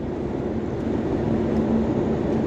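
Steady low rumble of a car heard from inside the cabin, with a faint steady hum.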